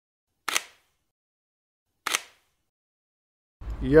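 Two camera shutter clicks about a second and a half apart, each a quick double snap, with dead silence between them.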